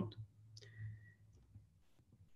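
A quiet pause in speech with a faint click just after the voice stops, and a low hum that fades out.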